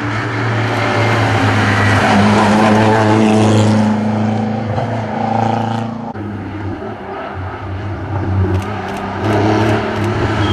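Classic rally car engine revving hard through a bend, its pitch climbing and dropping with the gear changes. The sound cuts off abruptly about six seconds in, and the next car, a classic Porsche 911, is heard approaching with its engine note rising near the end.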